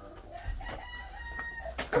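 Chickens clucking faintly, with a thin, held call about halfway through.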